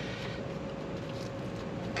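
Steady background noise with a faint constant hum and no distinct sound events.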